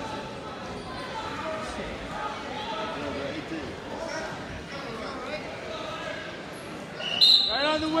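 Many overlapping voices of spectators filling a large, echoing gym hall, then about seven seconds in a short, loud, high referee's whistle blast, followed at once by a man shouting.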